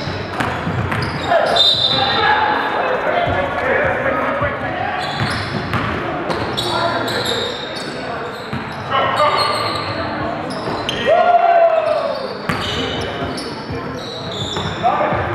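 Live indoor basketball game: a basketball bouncing on a hardwood gym floor amid players' and spectators' voices, all echoing in a large hall.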